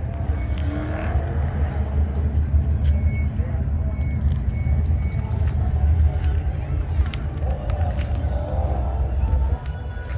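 Background voices of people talking over a steady low rumble, with the voices heard about a second in and again near the end.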